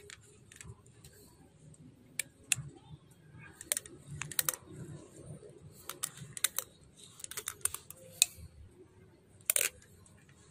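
Scattered light clicks and taps of a blue plastic threaded elbow fitting being turned by hand on the threads of a stainless steel check valve, with a few louder clicks about two and a half seconds in, in a cluster around seven to eight seconds, and a sharper one just before the end.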